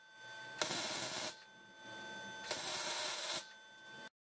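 Electric arc welding in short bursts: two welds of under a second each, about half a second in and again near three seconds in, with a faint steady whine between them.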